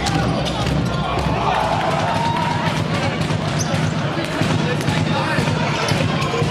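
Handball bouncing on a sports hall floor during play, repeated sharp strikes among players' shouts and crowd voices in the hall.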